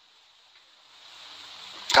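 A faint hiss that slowly grows louder, ending in a short click as a man starts speaking again: the background noise of a phone voice-note recording between spoken turns.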